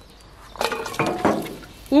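Onions tipped into hot olive oil in a steel pot, sizzling up about half a second in with a brief metallic ring from the pot, then dying down.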